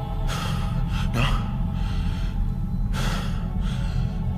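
Three short, breathy gasps, about half a second in, just after a second, and around three seconds in, over a low, droning film score.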